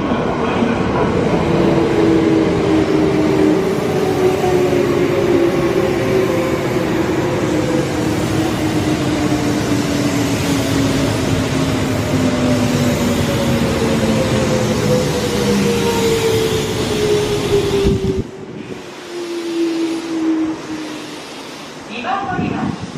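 Kintetsu electric train running in along the station platform: wheels rumbling on the rails while its traction motors whine, the pitch falling steadily as the train slows for its stop. About 18 seconds in, the sound cuts suddenly to a much quieter stretch, where a fainter falling whine dies away.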